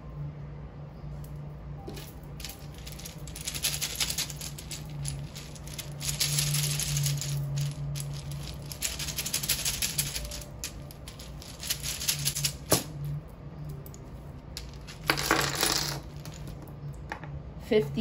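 Small wooden letter-and-number tiles clattering and rattling against each other in several bursts, as a handful is shaken and mixed.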